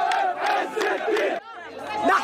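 A large crowd of many voices shouting together. It cuts off abruptly about a second and a half in, leaving a quieter stretch.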